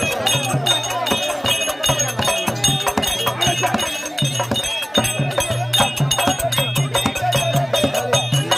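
Live therukoothu accompaniment: quick hand-drum strokes over a steady low held note, with bright ringing high tones on top, playing without a break.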